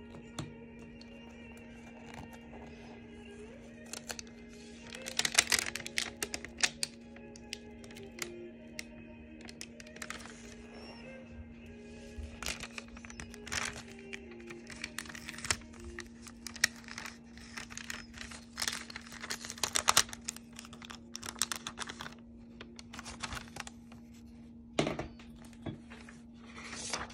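Masking tape being peeled off and tracing paper being handled and lifted from drawing paper, in repeated short bursts of crinkling and tearing. Soft background music with a steady drone plays underneath.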